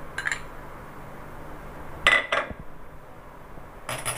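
A few light knocks and clinks of kitchen containers being handled: one near the start, a louder one with a brief ring about two seconds in, and another at the end, over a faint steady low hum.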